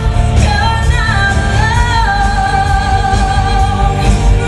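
A woman singing a musical-theatre song, holding long notes with vibrato that climb about a second in and are then held, over band accompaniment with a steady pulsing low end.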